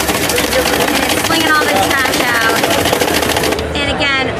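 iRobot Looj 330 gutter-cleaning robot driving along a gutter, its motor and spinning auger making a fast, even rattle as it flicks dry leaves; the rattle cuts off shortly before the end.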